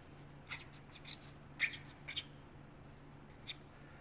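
Felt-tip marker writing on corrugated cardboard: a handful of faint, short squeaks of the tip dragging across the card, spread irregularly as words are written.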